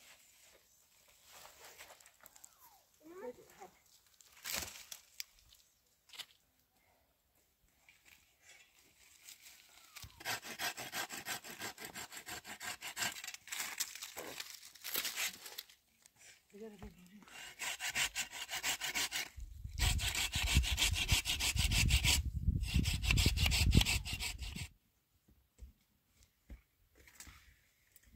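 Hand saw cutting through a tree branch in rapid repeated strokes: a first run starting about ten seconds in, and a longer, louder run from about seventeen seconds until shortly before the end. Before the sawing there is only faint scattered rustling of branches being dragged.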